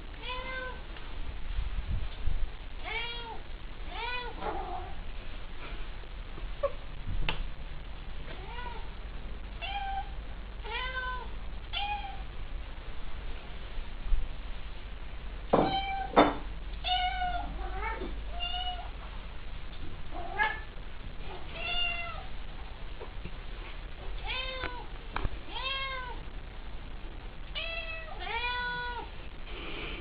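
A cat meowing over and over in short meows that rise and fall in pitch, about one every second or two, with a couple of sharp knocks and a low rumble underneath.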